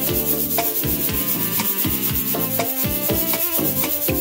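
LP Torpedo Shaker, a perforated metal tube, shaken in a steady rhythm of crisp hissing strokes over a recorded song with a bass line.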